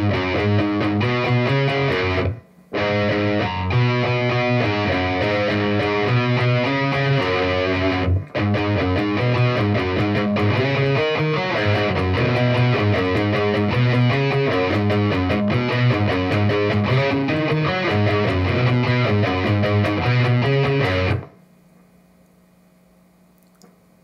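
Distorted electric guitar playing a fast riff of low notes on the two lowest strings, breaking off briefly twice. The playing stops near the end, leaving a faint steady hum.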